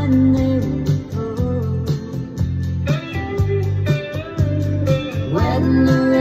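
Electric guitar played in a steady rhythm, with a voice singing a melody over it.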